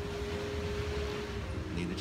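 Wind rumbling on the microphone over beach ambience, with a faint steady hum that fades out about one and a half seconds in. A man's voice starts again at the very end.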